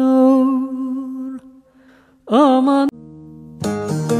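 Background music: a sung Turkish folk song's long held note fades out about a second and a half in. After a short pause comes a brief phrase that bends in pitch, and near the end a new piece starts with plucked string notes.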